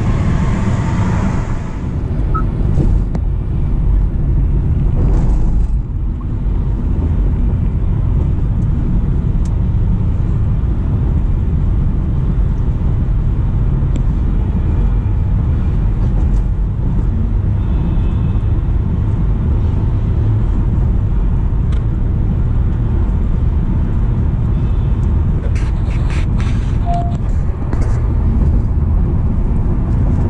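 Cabin noise of a Honda City e:HEV cruising at highway speed: a steady, loud low rumble from the tyres and road, with a few faint clicks near the end.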